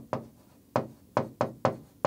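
Stylus tip tapping and knocking against the glass of a large touchscreen while handwriting letters: about six sharp, irregularly spaced taps, each stroke of the pen touching down.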